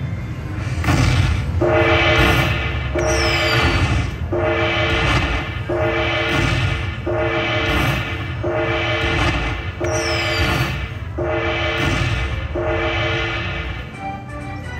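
Dragon Link Happy & Prosperous slot machine's jackpot celebration sound, signalling a Major jackpot win: a bright horn-like chord that repeats about every second and a half, nine times, over a steady low rumble.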